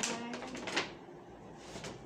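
Clothing being handled as a t-shirt is pulled from a pile: a few short rustles, the loudest about three-quarters of a second in.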